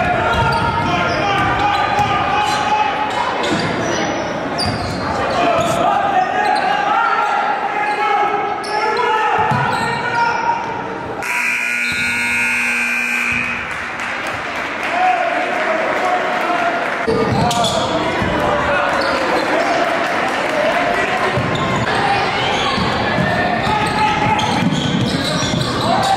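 Basketball dribbling on a hardwood court in an echoing gym, under the chatter and calls of spectators and players. Near the middle, a steady tone sounds for about two seconds, typical of a game buzzer or whistle.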